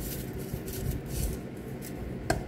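Salt shaken from a small plastic shaker onto raw chicken drumsticks: a few quick shakes, a dry scratchy rattle of grains, fading in the second half.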